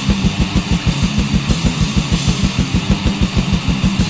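Black/death metal: distorted electric guitars over a fast, even kick drum, about eight strikes a second.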